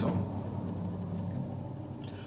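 Low, steady background hum of studio room tone, with no other distinct sound.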